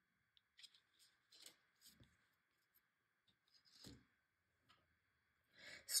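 Near silence with a few faint, scattered taps and rustles of tarot cards being handled, the clearest about four seconds in and just before the end, as a card is laid on the table.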